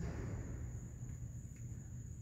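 Night-time outdoor ambience: a steady, high-pitched insect trill, with a low rumble underneath.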